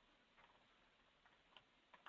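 Faint keystrokes on a computer keyboard: a handful of soft, irregular clicks over near silence.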